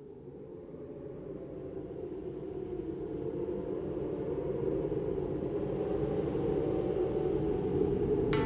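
A low, noisy rumbling drone fading in and swelling steadily louder, the opening of a metal album's intro track.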